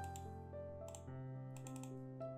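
Soft background music with held notes, over a series of sharp computer mouse clicks: one near the start, one about a second in, and a quick run of several near the end as the calendar is paged from month to month.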